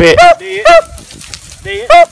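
Beagles giving tongue while running a rabbit: three short, pitched yelping bays that rise and fall, one near the start, one in the middle and one near the end.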